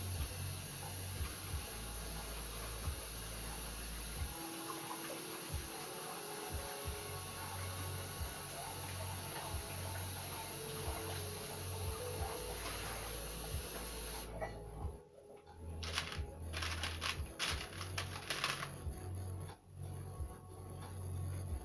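A steady low electrical hum with a background hiss. In the last few seconds a run of light clicks and rattles comes as a strand of plastic beads is lifted off the wet paint on the canvas.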